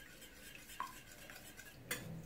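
Wire whisk beating egg batter in a bowl: faint swishing, with two light clicks of the whisk against the bowl about a second apart.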